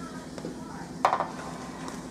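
Kitchen handling noise as pizza dough is moved onto a metal baking pan: one sharp clink with a short ring about a second in, a few light ticks, and a steady low hum underneath.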